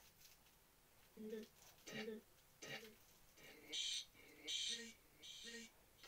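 A run of about eight faint, short voice-like sounds, each under half a second, coming roughly every half second to a second.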